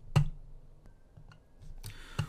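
A single sharp computer mouse click just after the start, followed by quiet room tone with a faint high tone and a few small ticks.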